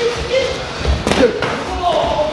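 A sparring strike landing with a thud about a second in, over background voices in the gym.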